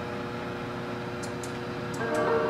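Steady hum of a kitchen appliance fan running, with a couple of faint, even tones held over it.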